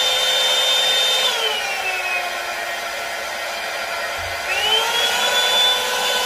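Revlon One-Step Hair Dryer & Styler's fan motor running with a whine, switched to a lower speed about a second in so the whine drops in pitch, then switched back up near the end so it rises to full speed again.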